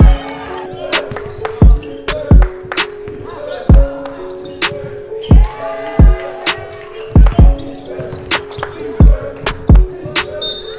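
Background music: an instrumental beat with a heavy kick drum and sharp percussion hits over sustained synth chords.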